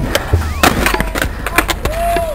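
Skateboard clattering on pavement: a quick string of sharp clacks of the deck and wheels hitting the ground as the skater bails.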